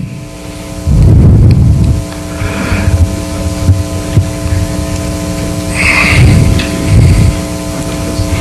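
Steady electrical mains hum from the talk's sound and recording system, a set of unchanging tones, with louder low rumbles about a second in and again around six seconds.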